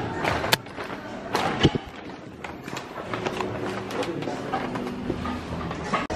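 Background music playing quietly, with a few sharp knocks and rustles from a handheld camera being moved in the first two seconds.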